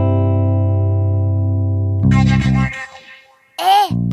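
Theme music: a sustained, many-note guitar-like chord over a steady low pulse that cuts off about two seconds in with a short vocal flourish. After a brief pause a high cartoon voice begins near the end.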